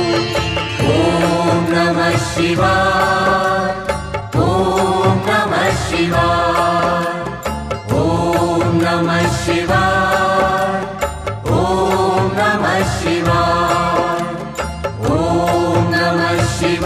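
Background devotional music: a chanted mantra, one sung phrase recurring about every four seconds over a steady accompaniment.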